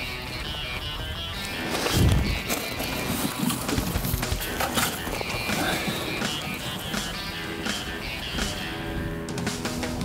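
Background music, with scattered clicks beneath it and a low thump about two seconds in.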